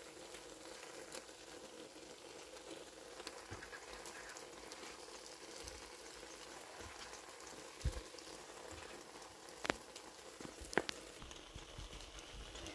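Omelette frying softly in a non-stick pan, a faint steady crackling sizzle, with a few sharp clicks in the second half.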